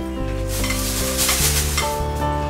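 A German Shepherd licking and eating food off a plate: a dense wet hissing noise lasting over a second, beginning about half a second in. Background music with held notes plays throughout.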